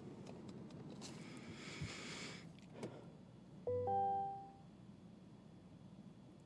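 Electronic chime from a 2022 GMC Sierra's dashboard: one bell-like tone about halfway through that fades over roughly a second, following a soft rustle and a small click as a control on the centre stack is pressed.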